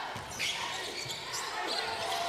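A basketball dribbled on a hardwood court, with a few short thumps over the hollow ambience of a sparsely filled gym.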